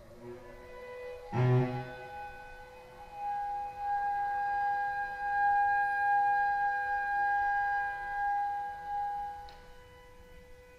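Contemporary chamber music for bassoon and cello: a short, louder low note about a second and a half in, then a long held high tone over a quieter steady lower one, fading away near the end.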